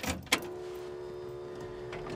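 1953 Pontiac Chieftain's ignition being switched on for a cold start: a sharp click about a third of a second in, then a steady electric hum.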